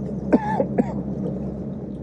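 A man clears his throat once, about half a second in, over the steady low hum of the bass boat's outboard engine running as the boat moves.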